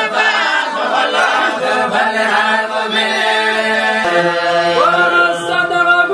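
A man's voice chanting Quranic recitation in a slow, drawn-out melody with long held notes. A new phrase begins about four seconds in and rises in pitch.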